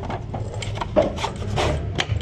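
A wooden sewing machine box being handled and shifted on a concrete floor: a run of short wooden scrapes and rubs, with a sharper knock about halfway through.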